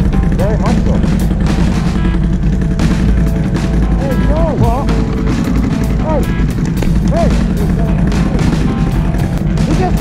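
ATV engines running at low speed as the quads move off, with background music playing over them.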